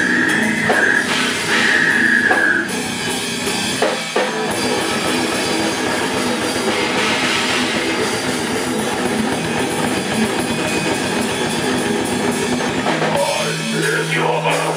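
Live slamming brutal death metal band playing at full volume: drum kit and distorted electric guitars. A high held tone rings over the band for the first couple of seconds.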